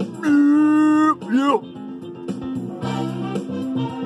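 Background music with guitar and keyboard. A quarter second in, a man's voice holds one loud note for about a second, then swoops quickly down and back up.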